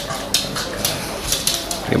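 Irregular sharp clicks and light clatter from a pug mouthing a rock on a hardwood floor.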